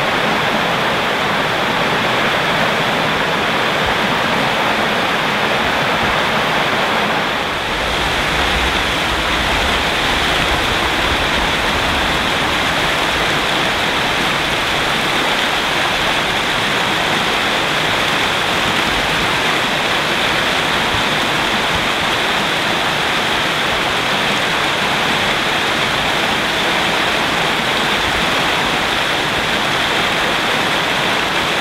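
Small woodland stream cascading over rocks in a little waterfall: a steady, loud rush of water. It dips briefly about seven seconds in, then runs on unchanged.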